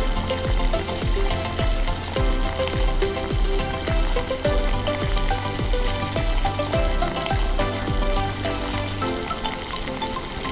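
Background music with a steady beat and bass line, over the steady sizzle of a spicy fish gravy cooking in a pan.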